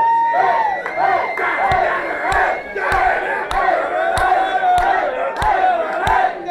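Concert crowd singing and chanting together, many voices in unison, over a steady clapping beat of about two strikes a second.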